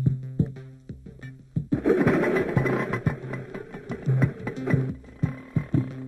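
Film background score: a repeating low bass note with short plucked, guitar-like notes, swelling into a fuller, denser texture about two seconds in.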